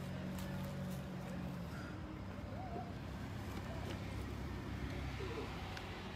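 Traffic noise from a street intersection: a vehicle engine hums steadily for the first couple of seconds over a constant background of road noise, with faint distant voices.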